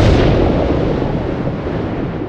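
Explosion sound effect: a sudden blast at the start that fades into a long, slowly dying rumble.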